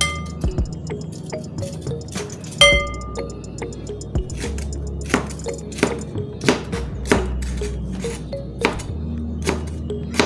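Kitchen knife chopping through red peppers onto a plastic cutting board: sharp knocks at irregular intervals, coming about once or twice a second in the second half, with one ringing clink about two and a half seconds in. Background music plays underneath.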